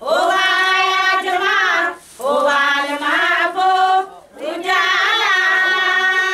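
High-pitched voices singing long, held notes in three phrases with short breaks between them, the pitch wavering in places.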